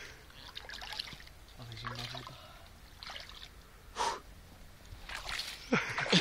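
Hands splashing lightly in shallow lake water, with a person's short breathy exhales. The loudest exhale comes about four seconds in.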